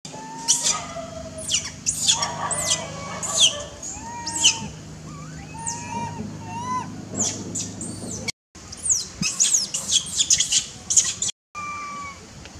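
Birds chirping: many quick, high chirps that fall steeply in pitch, with short arching whistled calls among them, over a low steady hum that stops about two-thirds of the way through. The sound drops out briefly twice.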